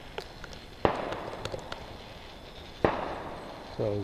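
Two distant gunshots, about two seconds apart, from people shooting on the surrounding mountains, each echoing and dying away in the valley.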